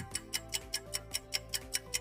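Ticking countdown-timer sound effect: rapid, even clock ticks, about three a second, over a soft held music bed.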